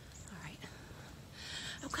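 A woman's breathing with a louder breathy hiss about a second and a half in, just before she starts speaking. A faint low rumble runs underneath.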